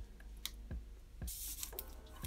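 Quiet drawing sounds: a few soft ticks and a brief scratchy rustle a little over a second in, from a felt-tip marker and hand moving on paper.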